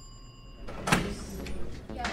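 A bell ringing with a few steady tones fades out, then a sharp click about a second in and a door being opened.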